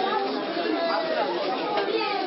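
Several voices talking over one another as background chatter, too indistinct for words to be made out.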